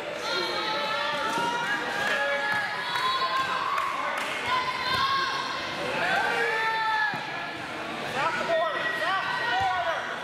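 Echoing gymnasium background: many short squeaks and scattered voices, with occasional thuds, at a steady level throughout.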